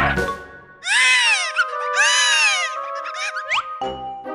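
Two high-pitched, whiny cartoon character cries, each rising and then falling in pitch, about a second apart, over background music, with a few short upward squeaks near the end.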